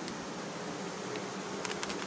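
Steady background hum and hiss, with a quick cluster of light crackles from plastic packaging being handled about a second and a half in.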